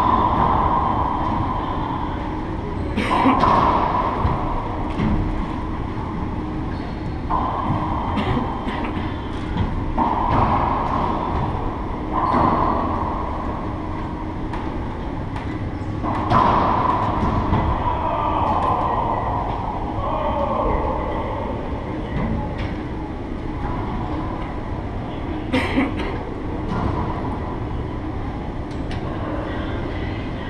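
Racquetball rally in an enclosed court: sharp cracks of racquet on ball and ball on the walls, a few seconds apart, each ringing on in the court's echo. A steady low rumble runs underneath.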